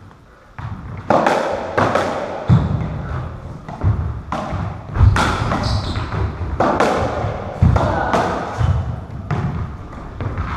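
Racketball rally: the rubber ball is struck by stringed rackets and smacks off the court walls, about one sharp hit every second, each echoing around the enclosed squash court. The hits begin about half a second in.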